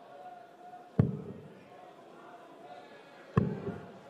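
Two darts striking a bristle dartboard, each a sharp thud, about two and a half seconds apart, over a low arena crowd murmur.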